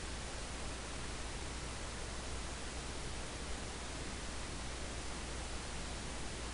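Steady hiss of background noise with a low hum underneath, unchanging throughout, with no distinct events.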